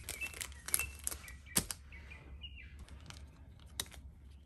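Birds chirping in short calls in the background, while clear plastic sticker sleeves are handled close by with sharp crinkles and clicks, the loudest click about a second and a half in and another near the end.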